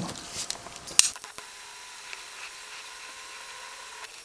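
Faint handling noise of a wire being worked into a red insulating sleeve on a helping-hands stand: one sharp click about a second in and a few soft ticks, over a faint steady hum.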